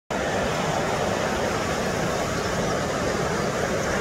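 Ocean waves breaking and washing toward the shore, a steady, even wash of noise with no break.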